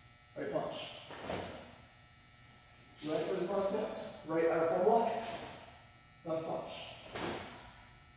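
A man's voice in short spoken bursts, calling out moves, with a few brief sharp noises from strikes and steps in between.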